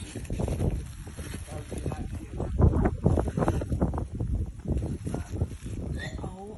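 Indistinct voices close to a phone microphone, with a rumbling noise on the microphone underneath.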